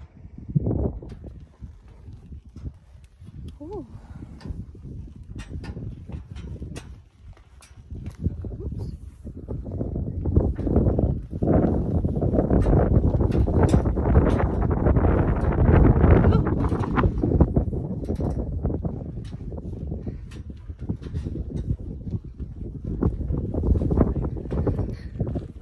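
Footsteps knocking on the steel grating stairs of a fire tower as someone walks down them, a quick run of sharp clicks and clanks. Under them is a heavy low rumble of wind on the microphone, loudest from about halfway through.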